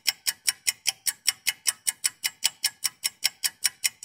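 Rapid, even ticking like a clock or timer, about six ticks a second with nothing else under it, cutting off suddenly at the end: a sound effect laid over the footage.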